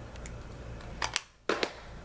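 Two sharp clicks and knocks of makeup items being handled and set down, about a second in and again half a second later, with the sound dropping out briefly between them.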